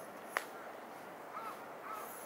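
A single sharp click about a third of a second in, then two short calls from a bird near the end, over steady outdoor background hiss.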